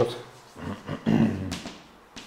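A man's voice making indistinct, drawn-out sounds between words, with a light tap of chalk on a blackboard.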